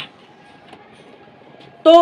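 Faint steady room hum with a thin, steady whine under it, then a man's voice begins near the end.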